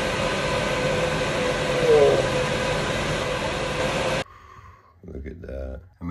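Steady hiss of a small handheld torch flame with a faint hum under it, cutting off suddenly about four seconds in; faint speech follows.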